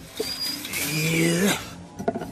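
A man's wordless, strained vocal effort lasting about a second, its pitch rising and then falling, as from someone stretching hard to reach something. Light cartoon background music plays under it.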